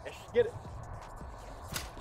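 Football passing machine set to 20 mph firing a ball: one short sharp snap near the end, over a low steady background.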